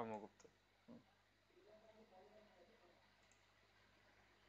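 Near silence, with a few faint computer-mouse clicks. A man's voice ends a word at the very start.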